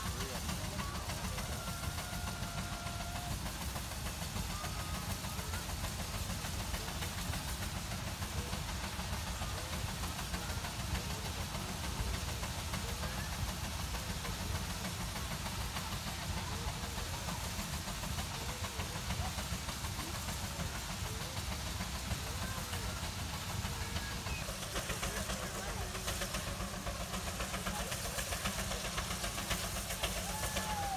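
Steam traction engines working hard under load, their exhaust running in a fast, continuous beat; the hard draft is throwing sparks out of the stacks.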